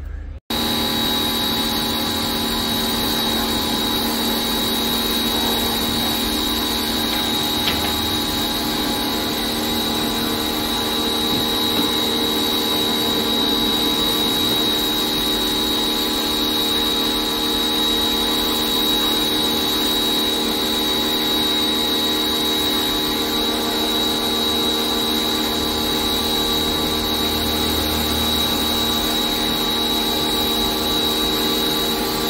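Electric pressure washer running steadily, its motor and pump giving an even whine with a high tone over the hiss of the water jet. It cuts in suddenly about half a second in.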